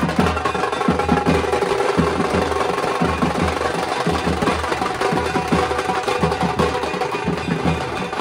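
A group of large double-headed marching drums beaten with sticks in fast, dense, continuous drumming with deep low strokes.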